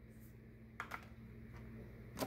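Two light clicks in quick succession just before a second in, from a stiff oracle card being set down among other cards on a wooden card stand, over a faint steady low hum.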